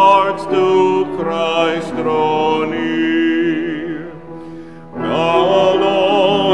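A male cantor singing a hymn with vibrato, with piano accompaniment; the singing falls away about four seconds in, between lines, and comes back in about a second later.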